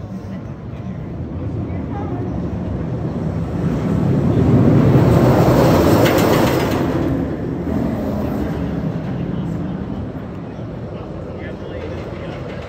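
Steel Vengeance hybrid roller coaster train running past overhead on its steel track atop the wooden structure. It grows louder, is loudest about halfway through, then fades as the train moves away.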